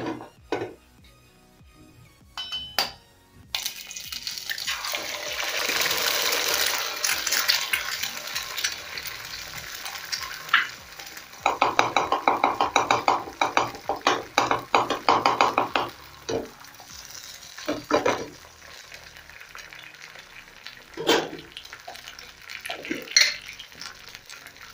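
An egg frying in hot oil in a metal frying pan: a few clicks, then a hiss of sizzling that starts suddenly about three and a half seconds in and keeps going. From about eleven to sixteen seconds a knife makes a quick run of scraping strokes against the pan, with a few single knocks of utensils after it.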